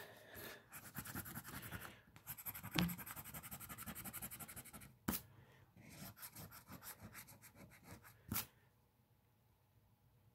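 A coin edge scratching the latex coating off an instant lottery scratch ticket in rapid back-and-forth strokes, in two long runs. There is a sharper scrape or tap about five seconds in and another near eight and a half seconds, after which the scratching stops.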